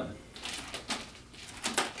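Metal chain and handles of a pair of nunchaku clicking and rattling as they are swung through a rip and caught in the hands: several short, sharp clicks spread through the moment.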